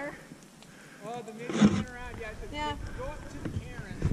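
People's voices talking, too indistinct to make out words, with wind buffeting the microphone. A single sharp thump sounds about one and a half seconds in.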